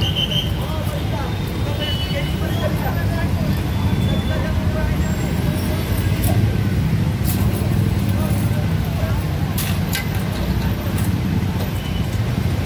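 Busy street ambience: a steady low traffic rumble under the indistinct chatter of a crowd, with a few light clicks or knocks.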